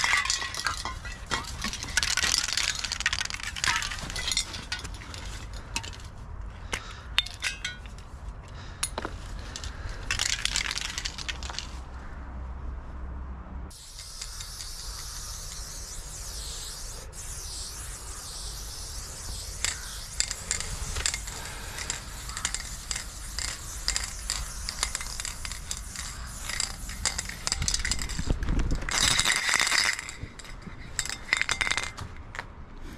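Aerosol spray paint can hissing in short bursts, then in a long steady hiss of about fifteen seconds, mixed with sharp metallic clinks and rattles.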